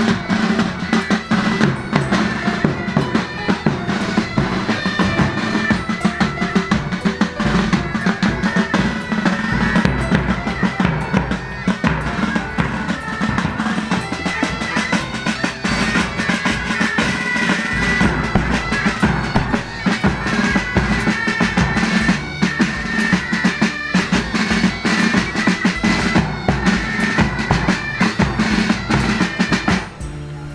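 Pipe band playing: bagpipes with their steady drone and melody over bass drums and snare drums beating throughout.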